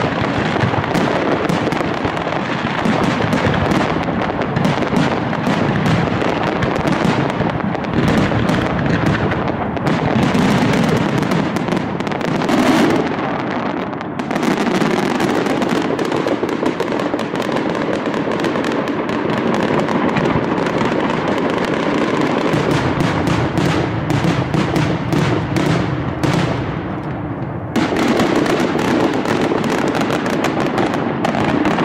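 Mascletà aérea: a dense, near-continuous rattle of bangs and crackling from aerial firecrackers bursting overhead. It thins out for a while, then comes back fuller and louder shortly before the end.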